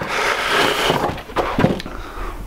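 A brown-paper parcel being torn open: about a second of ripping and rustling packaging, then a shorter rip.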